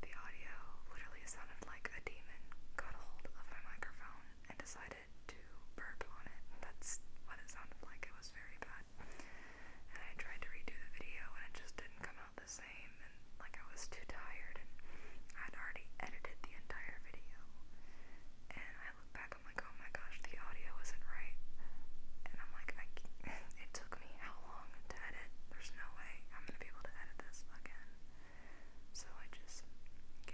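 A woman whispering continuously, talking with no voiced pitch, with sharp "s" sounds and small mouth clicks.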